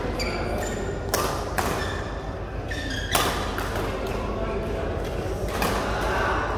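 Badminton rackets striking the shuttlecock during a doubles rally: a sharp crack about a second in, another just after, then one near three seconds and one near the end.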